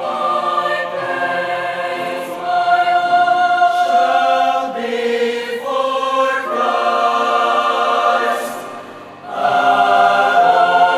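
Mixed choir singing held chords in harmony, the chords changing every second or two; the sound dips briefly near the end, then the next phrase comes in louder.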